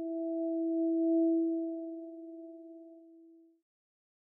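A steady electronic drone of two pure tones, a low one with a fainter one an octave above, swelling to its loudest just over a second in, then fading and stopping about three and a half seconds in.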